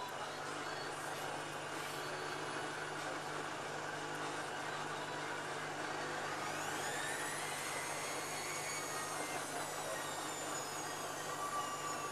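Whirlpool AWM5145 front-loading washing machine on its spin cycle: a steady running noise from the drum and motor. About six seconds in, a motor whine rises sharply in pitch as the drum speeds up, then holds and slowly sinks.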